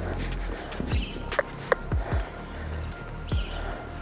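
A horse's hooves thudding dully on arena sand as it moves around the lunging circle, several separate hoofbeats, over steady background music.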